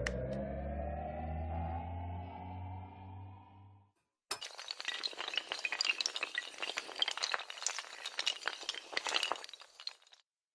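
Sound effects: a held droning tone whose overtones rise slowly, fading out about four seconds in. After a short gap comes about six seconds of dense, fast crackling, like glass shattering and tinkling.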